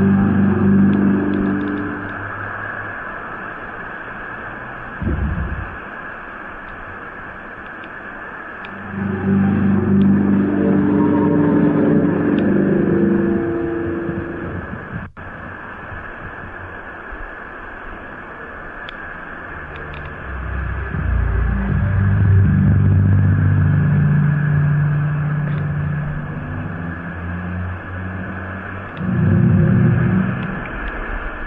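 A deep, droning sound in the sky with several low tones together, from an amateur recording of the so-called strange sky sounds. It swells up and fades in long waves of several seconds, over a steady hiss, and there is a short low thump about five seconds in.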